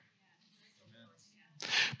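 A pause in a man's speech: faint room tone, then a short, sharp breath in near the end, just before he speaks again.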